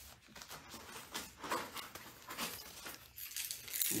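Newspaper spread on the floor rustling and crinkling in irregular scuffs as a Labrador puppy moves about on it.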